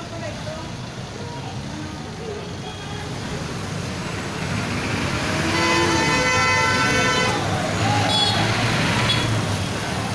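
Street traffic at a busy intersection, motorcycles and jeepneys pulling away, growing louder about four seconds in. A vehicle horn sounds for about two seconds near the middle.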